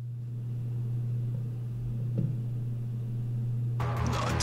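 A steady low drone with a faint hiss over it, then loud band music comes in just before the end.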